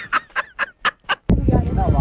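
A man laughing loudly in quick, staccato ha-ha bursts, about five a second. The laughter cuts off abruptly a little over a second in, and music with a voice takes over.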